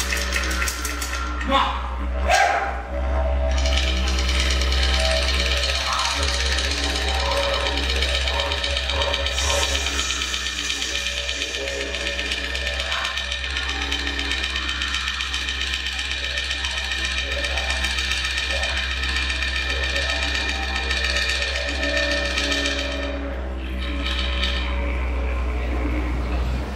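Didgeridoo playing a steady, unbroken drone to accompany a traditional Aboriginal dance, with a few sharp knocks in the first few seconds.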